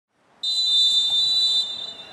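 Referee's whistle blown once for the kick-off: one long, steady, high-pitched blast of a little over a second that starts abruptly and cuts off.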